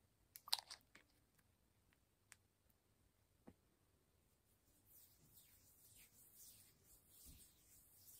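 Faint rubbing and swishing of hands working face oil into the skin, starting about five seconds in. It is preceded by a few small clicks from handling the glass dropper bottle in the first second.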